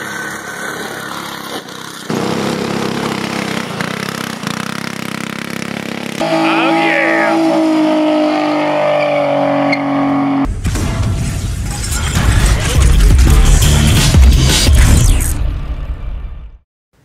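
A cut-together run of loud vehicle clips: a small go-kart engine running, then a car engine revving with tyre squeal during a burnout, ending in a louder, deeper stretch that cuts off suddenly.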